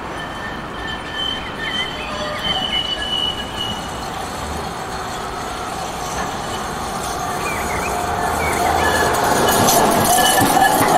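Bombardier CR4000 tram rounding a tight curve, its wheels squealing in steady high tones on the bend, with its running noise and motor hum growing louder as it approaches and passes close near the end.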